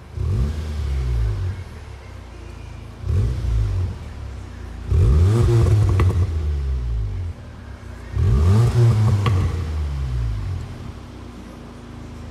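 2019 VW Golf R's 2.0-litre TSI four-cylinder turbo engine revved at a standstill through its quad exhaust: four rev blips, a short one at the start, another about three seconds in, and longer, louder ones about five and eight seconds in, settling back to idle between them.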